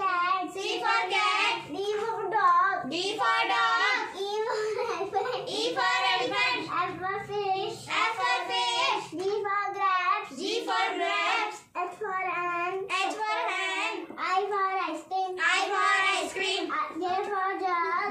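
A young girl's voice chanting an alphabet rhyme in a sing-song way, letter after letter with a word for each, almost without pause.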